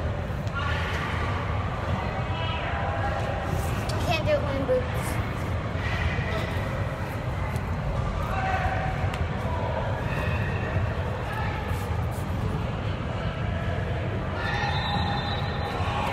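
Background voices and chatter from other people in a large indoor sports hall, over a steady low rumble of room noise.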